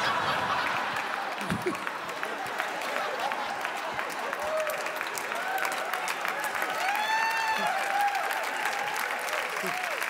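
Studio audience clapping and laughing after a punchline, with scattered whoops and shouts rising over the applause in the second half.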